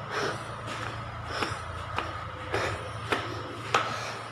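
Footsteps climbing concrete stairs with metal anti-slip nosings: about six even steps, a little under two a second, over a steady low hum.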